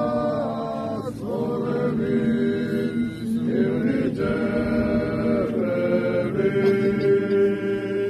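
A group of voices singing a slow Georgian folk chant in long held notes, several parts sounding together, with short breaks between phrases.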